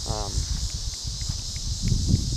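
Steady high chorus of insects chirring, with an irregular low rumble of wind buffeting the microphone that is the loudest part.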